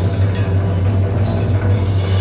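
Live free-jazz improvisation by an electric guitar, electric contrabass and drums trio. Busy drumming with cymbal hits about half a second and a second and a quarter in plays over a steady low drone.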